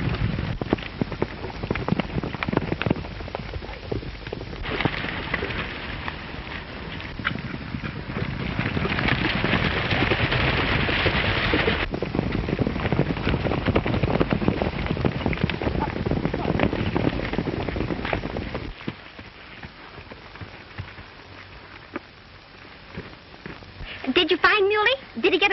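Several horses galloping, a dense patter of hoofbeats. The sound drops to a much quieter level about five seconds before the end.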